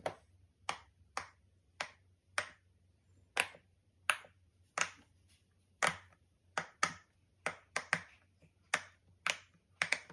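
Rainbow animal-shaped silicone pop-it fidget toy, its bubbles pressed in one after another by fingers: a string of sharp pops, unevenly spaced, about one every half second.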